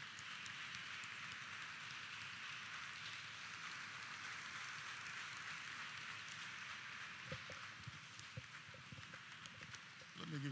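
Audience applauding: a steady patter of clapping in a large hall that thins slightly near the end, with a few faint knocks in the last few seconds.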